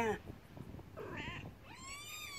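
Trapped kittens mewing faintly in thin, high-pitched cries: a short mew about a second in, then a longer one that rises and falls near the end.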